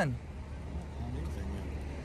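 Low, steady rumble of a police SUV's engine idling, with a faint voice over it.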